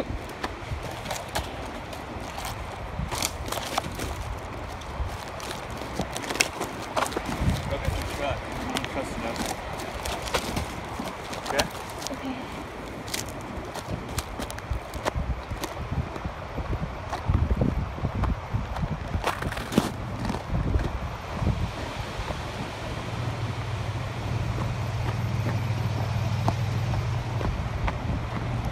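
Footsteps crunching over wood chips, twigs and crusted snow, with scattered snaps and knocks of branches. About two-thirds of the way through, a steady low hum of the truck's idling engine comes in and holds to the end.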